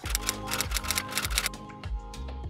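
Background music with a steady low beat, over which a rapid run of typewriter-like key clicks plays as a sound effect for about the first second and a half, then thins out.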